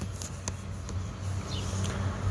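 A low steady hum under faint background noise, with a couple of faint short high chirps about one and a half seconds in.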